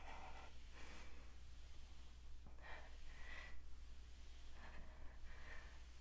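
Faint, effortful breathing of a woman doing sliding plank knee tucks. There are three soft breaths about two seconds apart, one with each rep.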